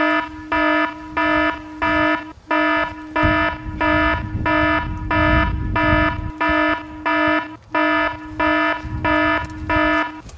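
Electronic alarm buzzer beeping in a steady rapid rhythm, about one low buzzy beep every 0.6 seconds, stopping at the end.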